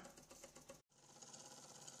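Faint, fast mechanical ticking of two small copper and brass Renown 101 toy steam engines running, barely above silence. The sound drops out completely for a moment just before a second in.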